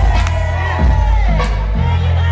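Old-school hip-hop track played loud through a club PA system, with a heavy bass line and sharp drum hits, while a crowd cheers over it.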